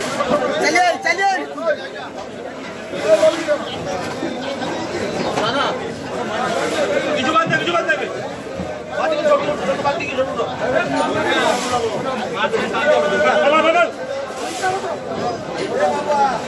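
Many people talking at once, a steady crowd chatter of overlapping voices.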